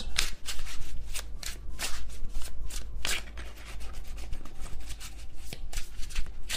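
A tarot deck being shuffled by hand: a quick, irregular run of cards sliding and rubbing against each other.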